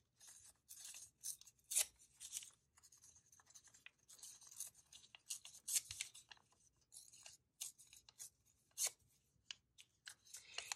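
Paper torn by hand into small slips and handled: a faint, irregular run of short rips and crinkles.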